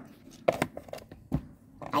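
A few light knocks and handling sounds of a small plastic doll figure and toy furniture being moved about in a plastic dollhouse, with one sharper knock about a second and a half in.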